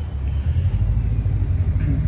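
Low, steady rumble of road traffic on the street close by.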